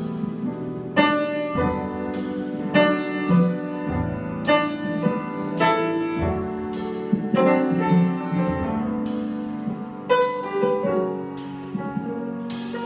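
A live jazz piano trio playing: acoustic piano and upright double bass carrying the harmony, with the drummer striking cymbals with sticks roughly once a second.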